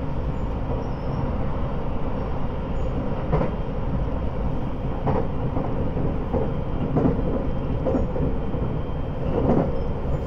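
Running noise inside a JR West 681 series electric limited express car at speed: a steady low rumble of wheels on rail, with a few irregular sharp clacks from the track.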